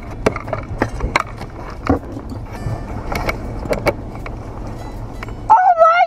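Knocks, clicks and rustling as someone climbs into the back seat of a car, over the car's low rumble. Near the end a loud, high-pitched excited voice breaks in.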